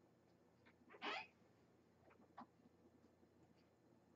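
Near silence: room tone, with one brief faint hiss about a second in and a few soft ticks.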